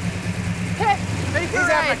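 A 426 Hemi V8 idling steadily, with a valvetrain rattle from its mechanical (solid-lifter) valvetrain. Voices talk over it from about a second in.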